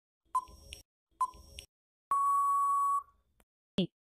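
Quiz countdown timer sound effect: two short beeps about a second apart, then one longer, steady beep lasting about a second that signals the time is up.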